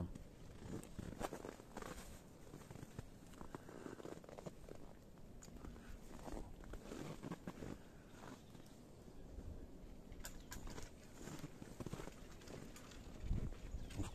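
Footsteps in snow, slow and irregular, with faint rustling between them.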